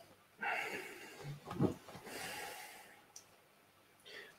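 A man sniffing whisky from a tasting glass: several quiet sniffs and breaths through the nose, from about half a second in until near three seconds, then a faint click.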